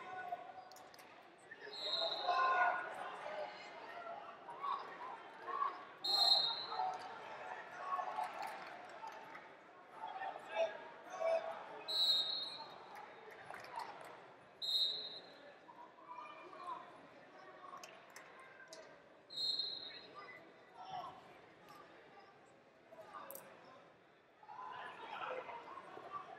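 Echoing ambience of a large sports hall: indistinct voices and chatter from around the arena, with about five short, high-pitched chirps scattered through it and occasional light knocks.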